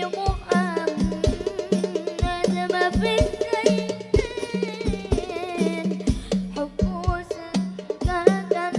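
A boy singing an Arabic qasidah with wavering, ornamented vocal lines over a fast, steady rhythm of hadrah frame drums (rebana).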